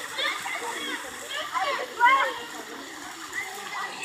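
Children's voices calling out over the steady spray and splash of a splash-pad water fountain; the loudest call comes about halfway through.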